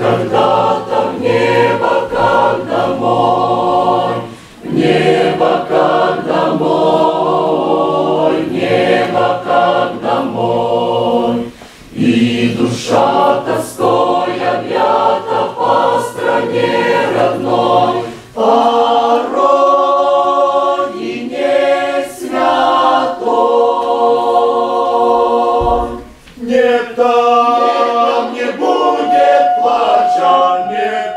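Mixed church choir of men's and women's voices singing a psalm, in long phrases with brief pauses between them.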